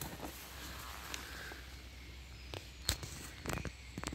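Faint footsteps and brushing through tall woodland undergrowth, with a few sharp clicks or snaps in the last second or so.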